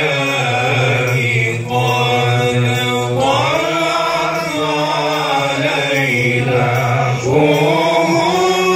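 Men chanting a maulid qaswida through microphones: a lead voice sings long, bending melodic phrases with short breaks between them, over a steady low note held underneath.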